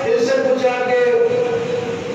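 A man's voice through a microphone, holding one long drawn-out chanted note that falls slightly in pitch.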